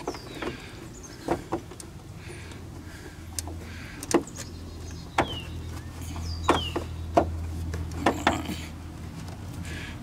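Scattered plastic clicks and knocks as hands work behind a car's plastic fender liner, fitting the headlight bulb and its rubber moisture cover into the housing. A low steady hum runs underneath from about three to eight seconds in.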